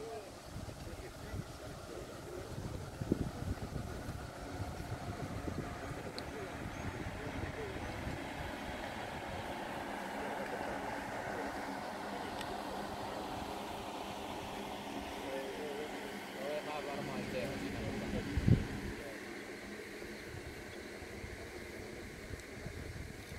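Indistinct background conversation of people outdoors, with wind rumbling on the microphone and a single sharp knock about eighteen seconds in.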